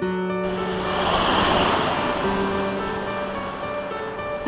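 Background music with long held notes, over which a rushing noise swells in about half a second in, peaks, eases off and cuts off suddenly at the end.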